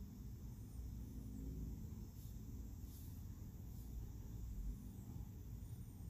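Faint stirring of chopped spinach in a frying pan with a wooden spoon over a low rumble, with a few soft scrapes about two, three and four seconds in.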